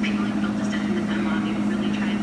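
Speed Queen front-load washer running with its drum spinning: a steady low motor hum, with faint irregular higher-pitched sounds over it.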